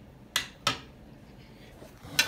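Two sharp clinks of kitchenware, about a third of a second apart, each ringing briefly.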